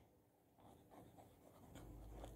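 Very faint scratching of handwriting or drawing, close to silence.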